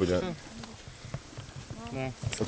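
People's voices: a short bit of speech at the start and another near the end, with a quieter gap between them that holds a few faint clicks.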